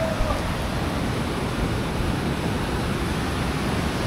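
Steady rush of flowing water, an even hiss with a low rumble.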